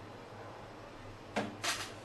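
GBC H220 laminator, slowed down for toner transfer, running with a low steady hum while a copper board passes through it. About a second and a half in come two short, sharp handling sounds.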